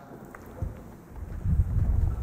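Low, irregular rumbling handling noise on a body-worn microphone as the wearer moves, starting about a second in after a moment of quiet room tone.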